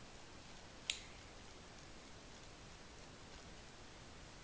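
Mostly quiet room tone with faint handling of hair as two-strand twists are pulled apart, and one short, sharp click about a second in.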